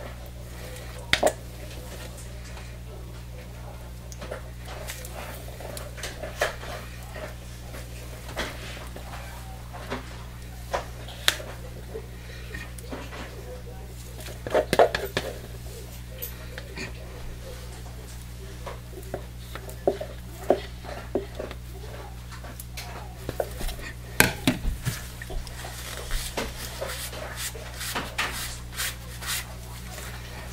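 Silicone spatula scraping and tapping soap batter out of a plastic pitcher onto a loaf mold: scattered light knocks and scrapes over a steady low hum, with a cluster of louder knocks a few seconds before the end as the plastic pitcher is set down on a glass cooktop.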